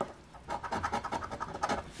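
A coin scraping the scratch-off coating from a lottery ticket in quick, rapid strokes, starting about half a second in.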